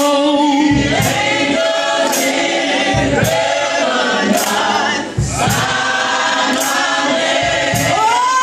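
A group of mixed voices singing a gospel song together, a woman's voice on a microphone leading. Sharp claps land about once a second, and the singing breaks briefly about five seconds in.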